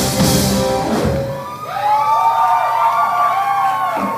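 Live rock band with electric guitar and drum kit playing the last bars of a song, breaking off about a second in. After that come overlapping high wails that rise and fall, with no bass or drums under them.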